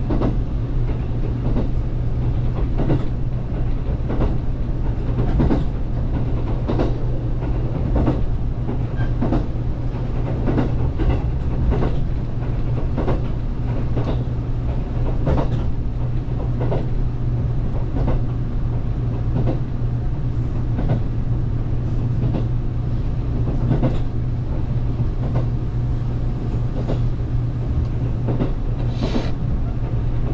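Interior running noise of a JR Kyushu 783-series limited express electric train at speed: a steady low hum with irregular clicks of the wheels over rail joints. A brief higher-pitched sound stands out near the end.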